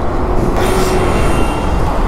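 A high squeal, several tones at once, lasting about a second, over a steady rumble of road traffic.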